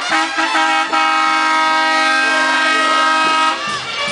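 Semi-truck air horn: a few short toots, then one long blast of about two and a half seconds that sags in pitch as it cuts off.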